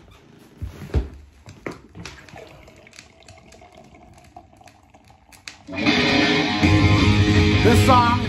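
A few faint clicks and knocks from handling at the record player. Then, about six seconds in, loud heavy rock with electric guitar starts playing from a vinyl record over the speakers.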